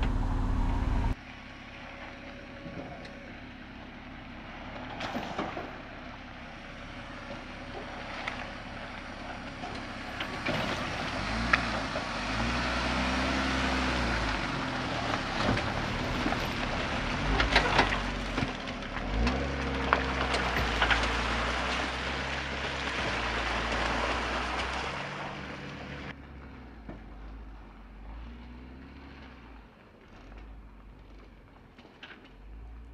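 A Jeep Wrangler towing an off-road trailer climbs a rocky dirt trail. Its engine revs up and eases off twice, over tyres crunching on gravel and stones with scattered sharp clicks, and the sound fades near the end as it passes. In the first second, the air compressor that was inflating the trailer's airbags runs loudly and then cuts off.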